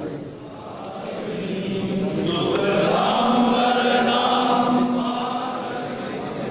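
A group of voices chanting in unison with long held notes, growing louder over the first two seconds and then carrying on steadily.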